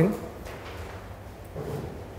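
Quiet classroom room tone after a man's spoken word ends at the very start, with a faint low sound near the end.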